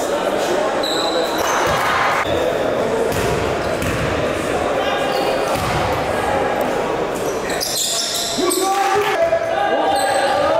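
Basketball bouncing on a hardwood gym floor amid indistinct voices, echoing in a large hall. The voices grow clearer near the end as play resumes.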